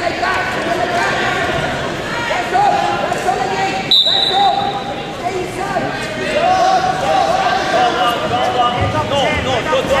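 Overlapping shouts of coaches and spectators in a large echoing gym, with a short, high whistle blast about four seconds in and a few dull thuds, likely wrestlers' feet and bodies on the mat.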